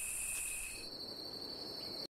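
Rainforest insect chorus: a steady, high-pitched buzzing that changes to a different set of pitches just under a second in.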